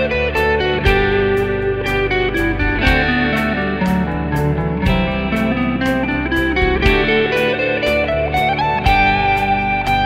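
A Les Paul-style electric guitar plays a G major scale up and down the neck over a backing track with a steady drum beat and changing chords (C, D, G). About three seconds in, a scale run falls and then climbs back up.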